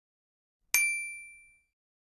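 A single bright bell ding, the notification-bell sound effect of a subscribe animation, struck once about three-quarters of a second in and ringing away over just under a second.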